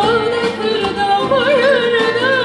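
A female voice sings a Turkish art-music song in an ornamented, melismatic line with a wavering pitch, accompanied by an ensemble of strings including violin and plucked instruments.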